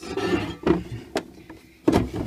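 Scraping and handling noise, then three sharp knocks, as a cast aluminium motorcycle gearbox cover is handled and set down on a wooden surface.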